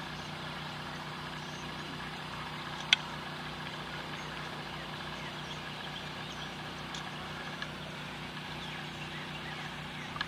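Steady outdoor background hum with faint, scattered bird chirps and one sharp click about three seconds in.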